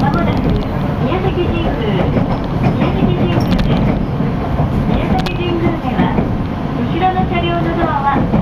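Local train running on the rails, heard from inside the carriage: a steady low rumble with a few brief clicks. People's voices talk over it.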